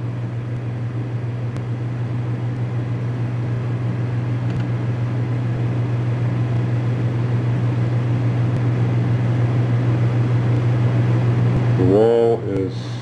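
A steady low hum with a rushing noise above it, growing slowly louder.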